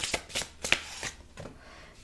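Tarot cards shuffled and handled: a quick run of sharp card flicks and slaps in the first second, thinning out after.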